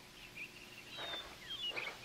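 Faint outdoor birdsong, many short chirps and whistles with quick rising and falling notes, heard from a film soundtrack played over loudspeakers in a large room.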